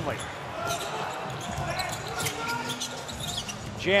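Basketball being dribbled up a hardwood court, with the low, even noise of the arena and faint voices of players behind it.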